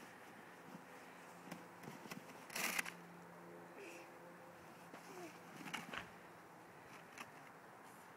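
A child's small plastic snow shovel scraping and crunching in snow and ice, a few faint scrapes and clicks with one louder, short scrape about two and a half seconds in, over a faint steady hum.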